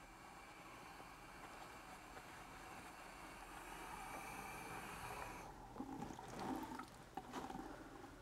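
Faucet water running faintly into a small sink basin as soapy hands are rinsed under it, cutting off suddenly about five and a half seconds in as the tap is shut. A few brief wet hand sounds follow.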